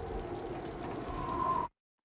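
Storm sound effect of heavy rain and wind: a dense, steady rush with a low rumble and a thin whistling tone that fades in and out. It cuts off suddenly near the end.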